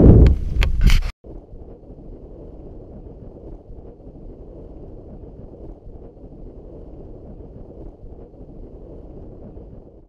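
Wind buffeting the microphone for about the first second, cut off suddenly; then a faint, steady low rush.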